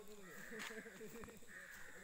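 Faint voices of people talking at a distance, with two harsh, drawn-out calls, each about half a second long, one near the start and one near the end.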